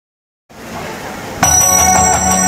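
Half a second of silence, then a rising hiss, then about 1.4 s in a band's music starts abruptly and loud, topped by high, steady ringing bell-like tones over an even beat.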